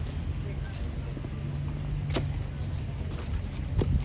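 Sea cadets' boots stepping on paving as they march into position, with two sharp steps, about two seconds in and near the end, over a steady low rumble.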